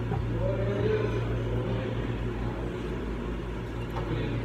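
A tuba playing a low, sustained phrase of a hymn close to the microphone, with higher melodic lines from the rest of the ensemble behind it.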